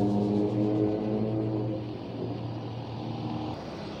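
A motor vehicle engine running with a steady hum, fading after about two and a half seconds.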